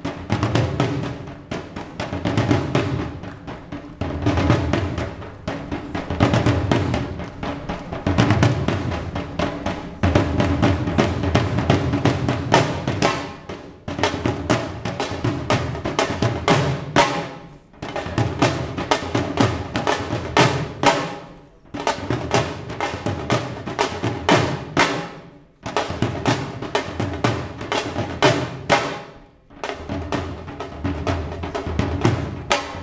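Punjabi dhol, a double-headed barrel drum, played in fast, dense rhythmic phrases. In the second half the strokes break off briefly about every four seconds before the next phrase starts.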